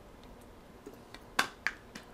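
Faint room noise, broken by two short sharp clicks a quarter of a second apart about a second and a half in.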